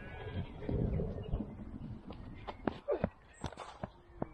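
Distant shouts of players calling out across a cricket field, with a few sharp knocks in the second half.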